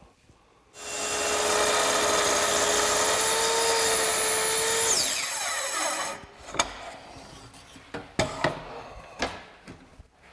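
Kreg Adaptive Cutting System plunge-cut track saw starting about a second in and ripping a narrow strip off a board along its guide track, running steadily for about four seconds. It is then switched off and the blade winds down in a falling whine, followed by a few knocks.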